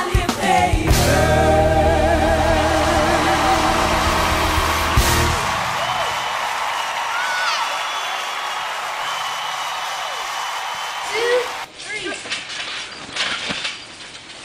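Gospel song with a singer holding long notes with vibrato over the band, the accompaniment thinning and fading after about five seconds. Near the end the music stops and a short stretch of a quieter, different recording with a brief voice takes over.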